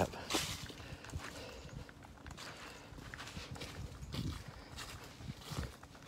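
Footsteps on dry leaf litter: irregular steps and rustling with no steady rhythm, the sharpest rustle about a third of a second in.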